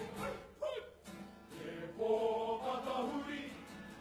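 Kapa haka group of men's and women's voices singing a waiata tira, a Māori choral item, in harmony. The singing falls away briefly near the start, with a single short gliding voice, and the full group comes back in about halfway through.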